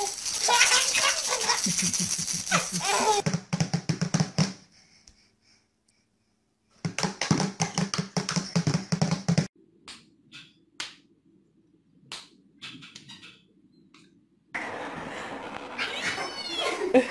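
Baby laughing in repeated bursts while a dad plays with toys, with taps on a small toy drum near the middle. The laughter breaks off for about two seconds after the first few seconds.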